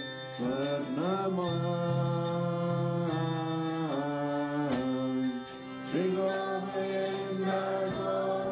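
Devotional kirtan: a voice sings a chant in phrases over a held drone, with small hand cymbals (karatalas) struck about twice a second.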